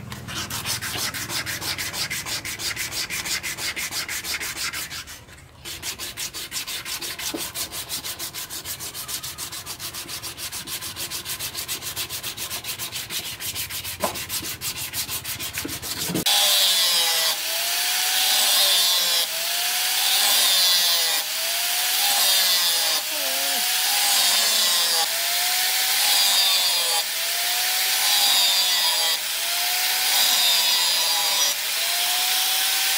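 Fast, even back-and-forth hand sanding for the first half, with a short pause near the start. About halfway the sound switches to an angle grinder with an abrasive disc grinding the steel machete blade. Its whine dips and recovers with each pass, about every second and a half.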